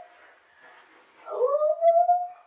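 A dog whining: one long call starting a little past halfway, rising in pitch and then holding level.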